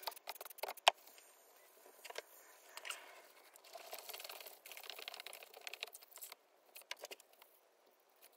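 Faint wet squishing and splashing as a foam air filter is squeezed and rubbed by gloved hands in a tub of water, rinsing out the cleaner and dirt. A few sharp clicks come in the first second.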